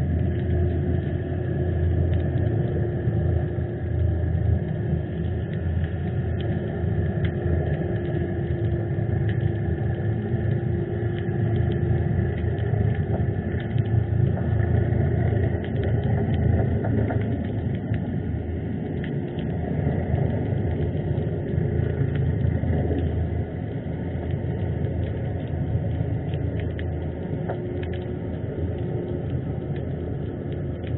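Underwater harbour noise: a steady low rumble with a faint constant hum and scattered small clicks.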